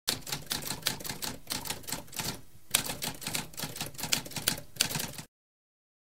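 Typewriter keys clacking in a fast, uneven run of strikes, with a short pause about halfway through, stopping abruptly near the end.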